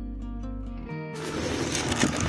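Background music with plucked notes, cut off about a second in by loud rushing wind noise on the microphone of a skier moving downhill.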